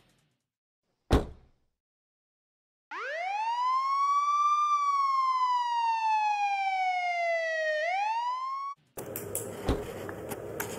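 A single sharp hit about a second in. Then a siren wail winds up, falls slowly, and starts winding up again before cutting off suddenly. Near the end, room noise and a few knocks begin.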